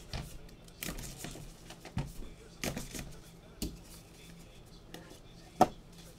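Gloved hands handling and opening a cardboard trading-card box: a handful of short knocks and scrapes of cardboard, with a sharp click shortly before the end, the loudest of them.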